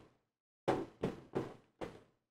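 Four short knocks over about a second, each sharp at the start and dying away quickly.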